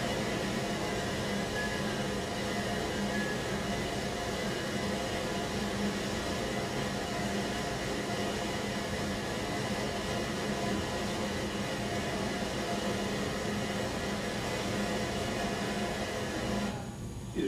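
Steady rushing of white water at a salmon waterfall, the soundtrack of a bear-fishing film clip played through room speakers, with a faint constant hum beneath it.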